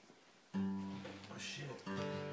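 Acoustic guitar strummed: a chord comes in suddenly about half a second in and rings out, then a second strum near the end.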